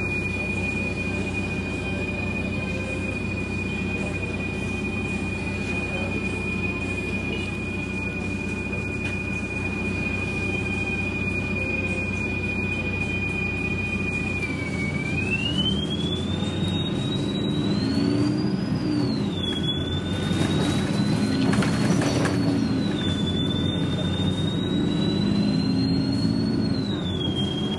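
Bustech CDi double-decker bus heard from inside, idling at a standstill with a steady high whine over a low engine hum. About halfway through it pulls away: the whine rises and falls back several times as the bus accelerates through its gears, and the cabin gets louder.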